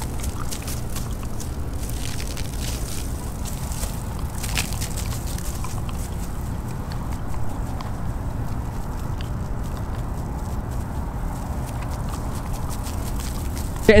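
Garden hose spraying water onto a lawn, under a steady low rumble, with a few light knocks about four and a half seconds in.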